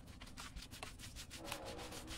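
Hands scrubbing soap lather into the wet hide of a cow's head: quick, irregular rubbing strokes.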